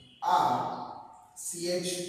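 A man's voice in two short utterances: the first starts abruptly just after the start and trails off, falling in pitch; the second is a shorter held sound near the end.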